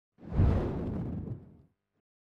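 Whoosh transition sound effect for an opening logo reveal: a deep rushing swell that hits about half a second in and fades away over the next second.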